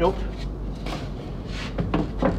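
Pieces of wooden planking being handled and set down on a workbench: a few light knocks and scrapes of timber on the bench.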